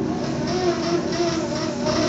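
KitchenAid stand mixer running on its lowest speed with the flat paddle beater, a steady motor hum as it mixes the ground-beef burger mixture in its steel bowl.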